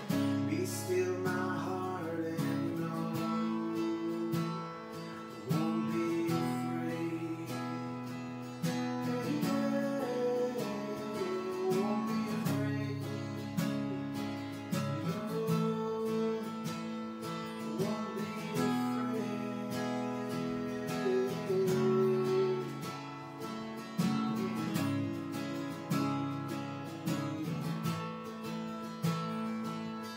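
Acoustic guitar strummed in a steady rhythm, the chords changing every few seconds.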